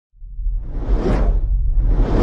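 Cinematic whoosh sound effect over a deep, steady rumble. It swells up to a peak about a second in and falls away.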